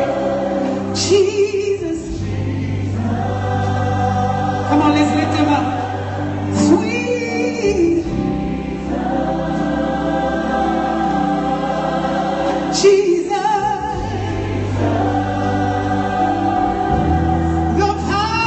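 Live gospel worship music: a woman leads the singing into a handheld microphone, joined by backing singers, over sustained low chords that change every few seconds.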